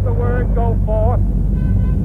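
Intro of an electronic dance track: a deep, steady rumbling drone under held high synth tones, with a spoken voice sample in about the first second.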